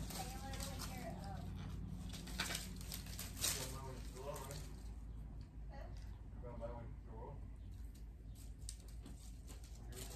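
Cutting pliers snipping through the wire stems of artificial flowers: a few short, sharp snips around the middle, with faint voices in the background.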